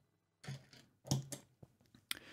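Faint clicks and knocks of hands working two guitar overdrive pedals: knobs turned and a footswitch pressed. There is a click about half a second in and a few more a little after one second.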